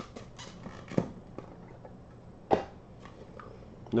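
Handling noise from a clear plastic card case being tilted, with a few light clicks and two sharper knocks, about a second in and halfway through.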